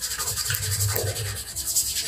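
A hand rubbing hard and fast back and forth across a flat surface, a steady rasping friction sound made of rapid strokes.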